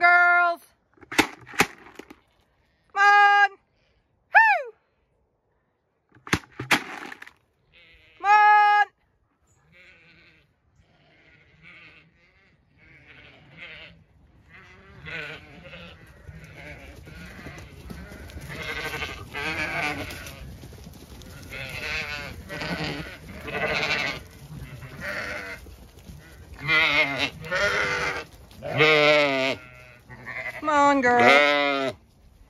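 Zwartbles ewes bleating as the flock comes in. A few separate calls in the first half give way to many overlapping bleats that build and are loudest near the end.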